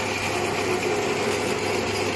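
UN6N40-LT mini combined rice mill, driven by a 3 kW single-phase electric motor, running steadily while husking paddy into brown rice: an even mechanical noise with a low hum.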